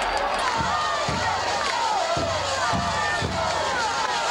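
Band music from the stands with a steady drum beat about two beats a second, over crowd noise and cheering.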